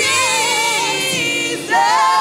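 Gospel singers holding long sung notes with vibrato, with a short break about one and a half seconds in before the next note begins.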